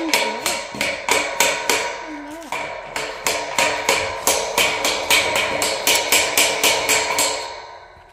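Hammer blows on a steel gate frame, a quick steady run of about three to four a second, each strike leaving the metal ringing. They fade and stop near the end.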